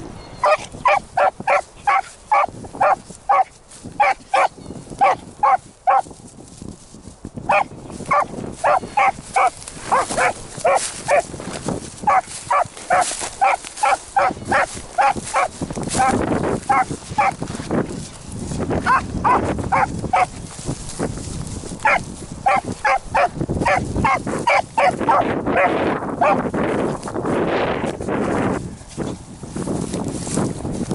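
A beagle baying while running a rabbit's scent trail: short, repeated barks, about two or three a second, in runs broken by brief pauses. Wind rushes on the microphone through the second half.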